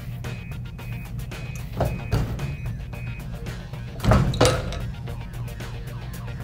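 Background music, with a heat press's platen clamping down on a cotton tank top with a thud about two seconds in. It opens again with a louder thud about two seconds later, ending a brief preheat that takes out wrinkles and moisture.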